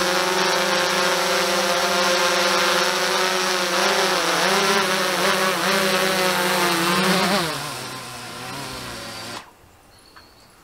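A DJI Mavic 2 quadcopter hovering close by, its propellers giving a steady multi-toned whine that wavers in pitch as it is manoeuvred. About seven seconds in, the pitch falls as the motors slow while it is brought down into the hand. The motors stop about nine seconds in.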